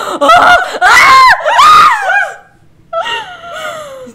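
Two young women screaming and squealing in excitement, several high, sliding cries packed into the first two seconds, then one long falling cry about three seconds in.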